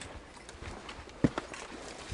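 Footsteps on a rocky mountain trail: hiking boots stepping and scuffing on stone steps, with a few irregular knocks on the rock, the loudest about a second and a quarter in.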